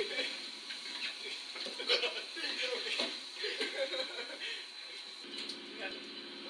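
Men laughing while several people walk on a heavy-duty Noramco treadmill, with irregular knocks and clicks from feet on the belt and deck. A steady low hum comes in about five seconds in.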